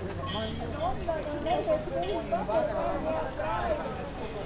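Several people talking at once in the background, their voices overlapping, with a few brief clicks about a third of a second in.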